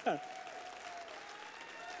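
Church audience clapping, with one long held vocal call rising over the applause in the first second and a half.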